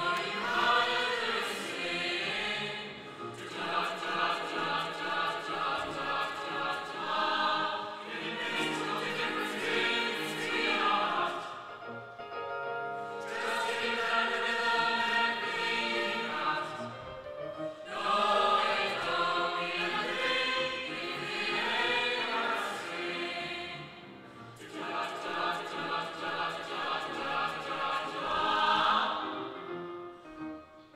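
Mixed-voice choir of boys and girls singing in long phrases, with short breaks between phrases.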